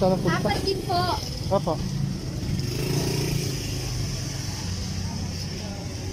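Brief talk in the first two seconds, then the steady low rumble of a running motor vehicle engine.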